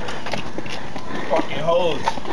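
Footsteps on a paved walkway, a run of short clicks, with a person's voice calling out in a rising and falling tone in the last half second.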